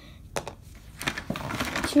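Cardboard and paper packaging being handled and rustled: a light tap, then from about a second in a steady crinkling rustle.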